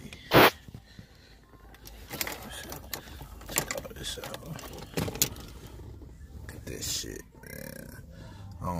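Handling noise from a phone moving over a car's dashboard and center console: rubbing, scattered clicks and light knocks, with one sharp, loud bump about half a second in.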